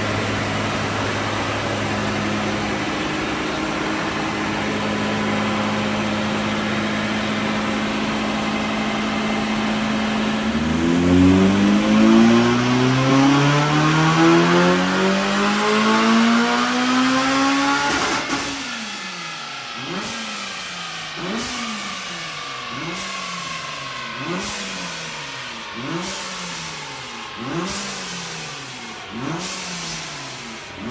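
Supercharged Honda Civic FN2 Type R four-cylinder engine on a chassis dyno: it runs steadily, then pulls under full load with its pitch rising for about seven seconds in a dyno power run. It cuts back sharply and then winds down, with a wavering note that repeats about every second and a half.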